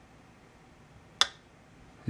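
Sal Manaro Bullseye custom folding knife's blade slamming home with one sharp click about a second in, snapped by its very strong detent.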